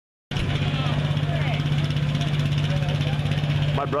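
Pulling tractor engine idling steadily with a low, even hum, cutting in suddenly just after the start.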